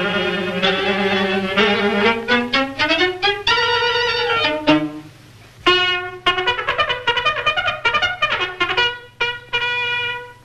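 Cartoon orchestra score with brass and violins playing quick, short notes. A note slides upward just before the middle, and the music breaks off briefly about halfway before starting up again.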